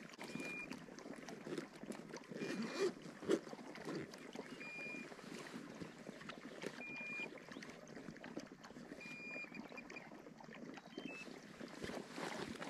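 Rustling and light knocks of a bag being handled and unpacked, over a steady outdoor hiss. A short, even whistled bird note repeats about every two seconds.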